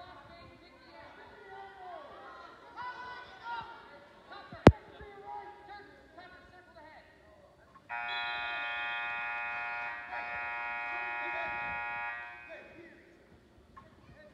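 Shouting from the mat side, broken by a single sharp smack about a third of the way in, then a gym scoreboard buzzer sounding steadily for about four and a half seconds, with a brief break partway through, marking the end of the wrestling bout.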